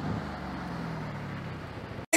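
Engine of a Mercedes-AMG GLC SUV running steadily as it drives, a faint low drone.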